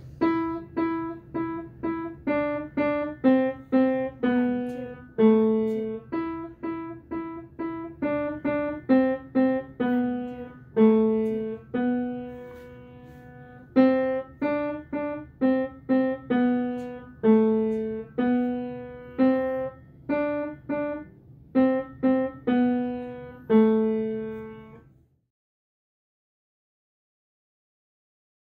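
Yamaha upright piano playing a simple single-line melody of a child's lesson piece, one struck note at a time in the middle register, with one longer held note about halfway through. The last note dies away shortly before the end.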